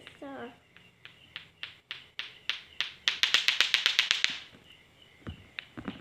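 Lato-lato clacker toy, two hard plastic balls on a string knocking together: a few uneven clacks, then a fast, even run of about nine clacks a second for just over a second before it stops, with a few more clacks near the end.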